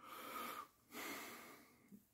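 A person breathing softly close to the microphone: two breaths of about half a second each.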